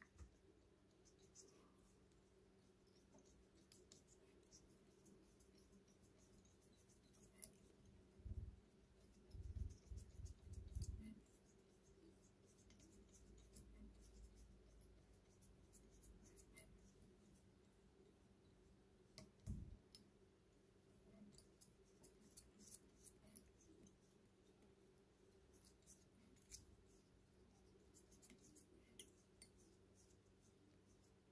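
Near silence with faint small clicks and ticks from hands wrapping thread on a fly hook held in a vise. A few low bumps come about a quarter and again about two thirds of the way through, and the ticks come more often near the end.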